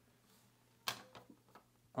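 A hard plastic PSA graded-card slab set down onto a stack of other slabs: one sharp clack about a second in, followed by a few lighter clicks as it settles.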